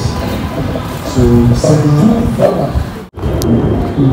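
Wind rumbling and buffeting on a handheld phone microphone, with faint voices and music beneath it. The sound drops out for a moment about three seconds in.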